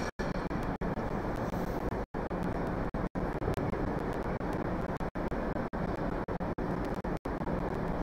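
Steady low rumbling background noise of an ice arena, with no music. It cuts out completely for an instant several times.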